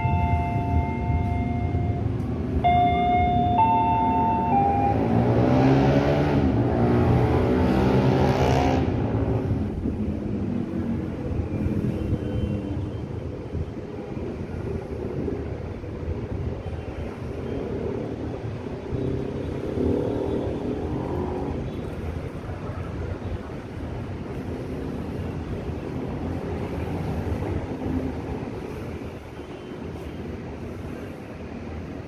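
A motor vehicle passes with an engine note that sweeps up and down, loudest about five to nine seconds in, over a steady rumble of city traffic. A short run of chime-like notes sounds in the first few seconds.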